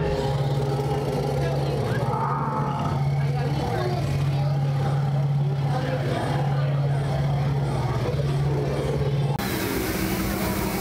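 A steady low hum, the loudest sound, stepping slightly between two close pitches every second or so, over background chatter; it stops abruptly near the end.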